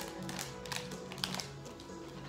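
Music from a television soundtrack, with a few sharp clicks and crinkles from a plastic snack bag being handled.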